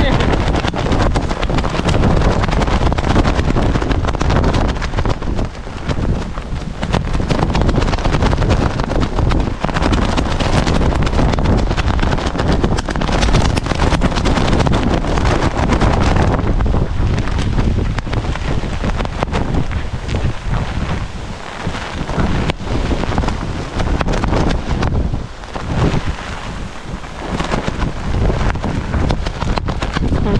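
Strong typhoon wind buffeting the microphone: a loud, rumbling rush that surges and eases in gusts, dropping briefly several times in the second half.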